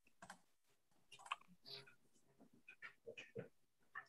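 Near silence broken by about half a dozen faint, scattered clicks and taps, like typing on a computer keyboard picked up by a meeting microphone.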